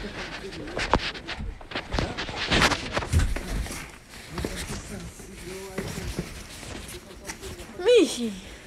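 Scattered knocks and rustles, then a house cat meows once near the end, the loudest sound here, its pitch rising and then falling.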